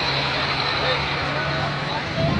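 Engine of a passing bus running with a steady low drone that drops away near the end, over general street traffic noise.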